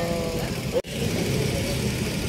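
A drawn-out spoken word fades out at the start and the sound cuts off abruptly. A steady low rumble of street traffic with motorbike engines follows.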